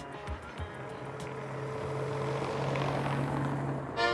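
A car driving on a street, its engine hum and tyre noise growing louder over a few seconds, with the last plucked notes of guitar music fading in the first second.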